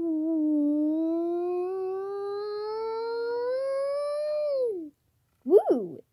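A child's voice singing one long held note that slowly rises in pitch for about five seconds, then falls away. A short swooping vocal glide follows near the end.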